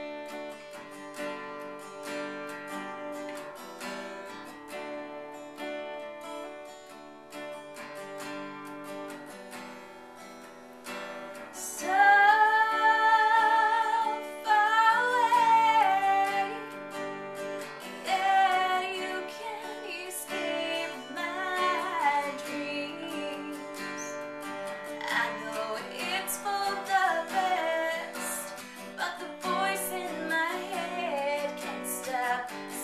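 Acoustic guitar playing an introduction on its own. About twelve seconds in, a woman's voice comes in singing the melody over the guitar, much louder than the guitar.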